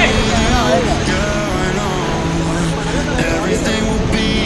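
Steady rush of a fast white-water river under a moving raft, with people aboard shouting over it.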